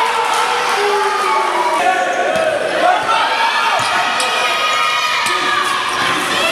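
Sounds of an indoor basketball game: a ball bouncing on the court with several sharp knocks, among overlapping shouting voices from players and spectators.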